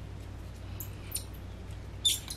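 Hand-turned countersink bit scraping into an acrylic plate: a few faint, brief squeaks about a second in, over a low steady hum.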